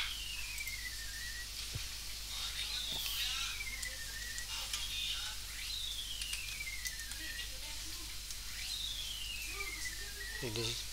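A bird calling four times, each call a whistled note sliding down in pitch over about a second, repeated roughly every three seconds, over a faint steady hum.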